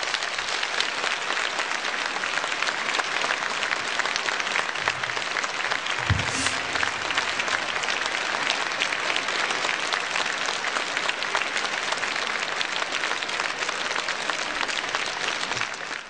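Audience applauding: dense, steady clapping after a choral and orchestral song ends.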